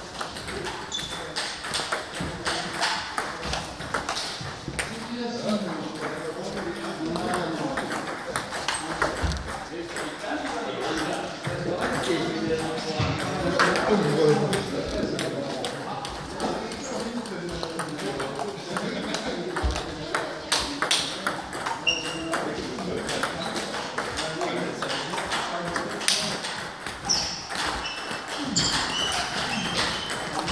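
Table tennis balls clicking off the table and the rubber bats, many sharp taps in a run of serves and returns, over indistinct talking in the hall.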